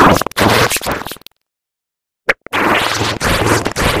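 Heavily distorted, effects-processed logo audio: loud, scratchy, stuttering noise chopped into many short pieces. It cuts out to silence about a second in, a single short click sounds just after two seconds, and the choppy noise starts again soon after.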